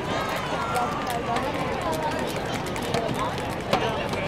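Outdoor crowd murmuring, many voices talking at once with no single clear speaker, with scattered sharp clicks.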